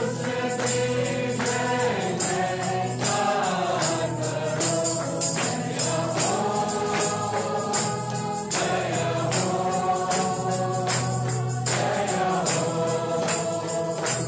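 Choir singing a Christian worship song over instrumental backing, with a steady percussion beat.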